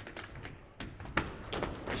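Dancers' tap shoes striking the stage floor in a break in the music: a handful of sharp, scattered taps, the strongest a little past the middle.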